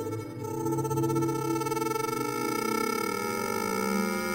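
Live electronic music: a layered drone of several held synthesizer-like tones, each pulsing rapidly. In the second half some of the pitches begin to slide.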